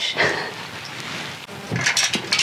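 Soft rustling handling noise as a hand goes to a wooden wardrobe door, with a light click at the start and a couple of small knocks near the end.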